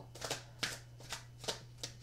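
Oversized Oracle of the Mermaids oracle cards being shuffled by hand: a run of about six short, uneven strokes in two seconds, the large cards being hard to shuffle.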